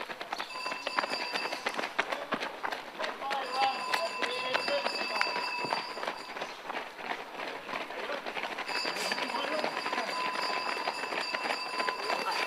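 Footsteps of runners on a street, many quick slaps on the pavement, with faint voices behind. A steady high-pitched whine sounds three times over the stretch, each time for a few seconds.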